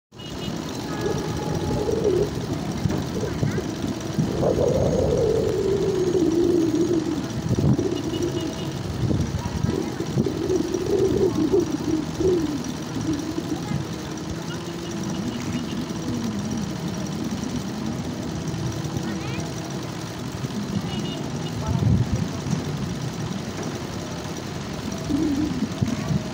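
Several people talking and calling out without clear words, over a steady outdoor background noise.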